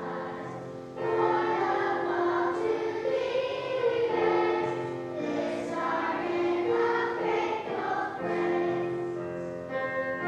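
A children's choir sings a praise song with piano accompaniment. The singing swells about a second in and carries on in phrases.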